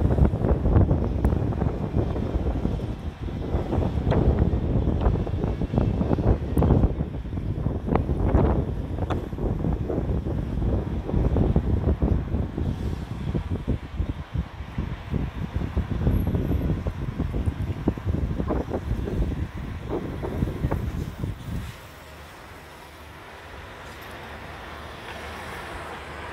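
Wind buffeting the microphone in uneven gusts, a low rumbling rush that drops away sharply about two seconds before the end.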